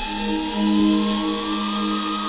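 Dubstep music: a synth tone slowly gliding upward over a sequence of held low synth notes, with a hiss of noise on top.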